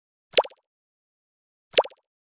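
Two short, quick falling-pitch 'plop' sound effects about a second and a half apart, the pops of on-screen text popping into place.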